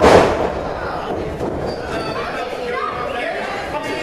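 A wrestler slamming down onto the wrestling ring's canvas: one loud impact right at the start that rings out briefly, followed by overlapping crowd voices and shouts.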